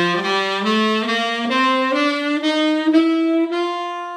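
Tenor saxophone playing the G7 dominant bebop scale upward in written key, G up to G, with the added chromatic F-sharp between F and G. The notes rise stepwise one after another, and the top G is held and fades.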